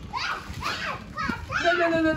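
A young child speaking and calling out, with a drawn-out, held vocal sound near the end.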